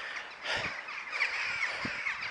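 Crows cawing.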